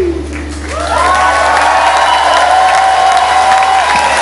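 The band's last sung note ends right at the start, then the concert audience breaks into applause and cheering about a second in, with a long whoop held over the clapping. A low steady hum runs underneath and stops near the end.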